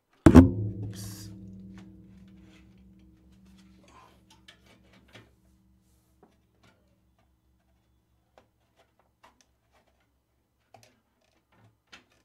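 A single hard knock about a third of a second in, followed by a low ringing hum that fades away over about five seconds, then a few faint small clicks.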